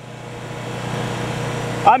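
A steady mechanical hum of running machinery, growing gradually louder, with no distinct strokes or pitch changes.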